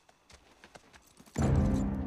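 A few faint clicks, then a loud, low, dramatic orchestral chord with drums that comes in suddenly near the end and holds.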